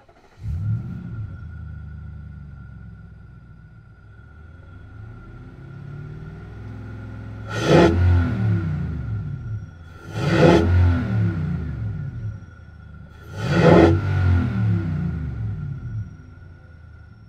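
Nissan Y62 Patrol's 5.6-litre petrol V8 heard at the mouth of its 5-inch stainless snorkel, with induction sound drawn through the intake. It starts about half a second in and settles to a steady idle, then is revved three times, each rev climbing quickly and dropping back to idle. A thin steady whine runs underneath.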